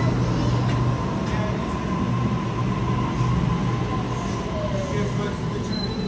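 Sydney Trains Waratah electric train slowing into a platform, its motor whine falling steadily in pitch as it brakes, over a steady electrical hum and a high steady tone.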